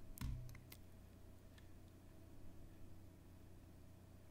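Near silence: room tone with a low steady hum, broken in the first second by a soft knock and a few faint, short clicks, like a computer keyboard or mouse being worked.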